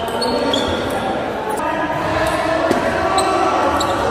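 A table tennis ball being struck back and forth in a rally: a series of sharp, irregular clicks of the celluloid-type ball off the rackets and the table, some with a short high ping, in a reverberant hall.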